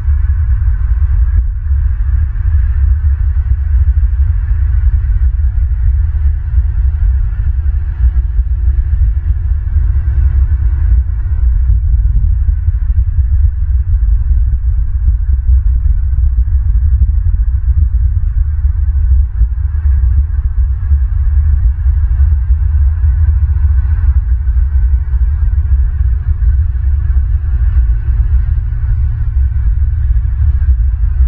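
Wind buffeting an outdoor camera microphone: a loud, steady low rumble that flutters without a break, with a faint hiss above it.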